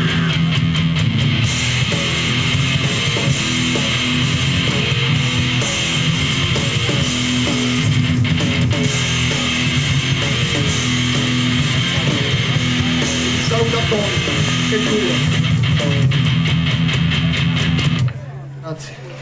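Live rock band playing loud, with electric guitars and drums going steadily throughout.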